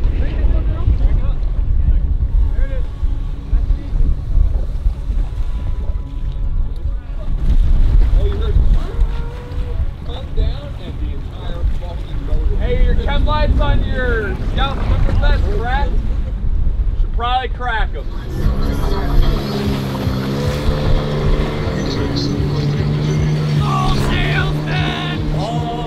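Motorboats and inflatable rubber raiding craft running through choppy sea, a heavy rumble of engine, water and wind noise, with a few voices calling out. About three-quarters of the way through, background music comes in and takes over.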